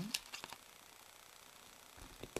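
A few light clicks and taps from handling small plastic earphones and a pocket MP3 player, then quiet room tone.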